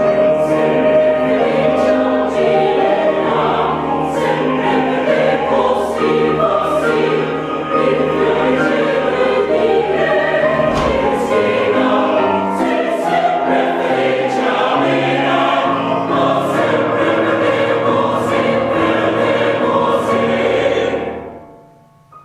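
Mixed choir of men's and women's voices singing an operatic chorus in full voice with piano accompaniment. The singing holds steady, then dies away about a second before the end.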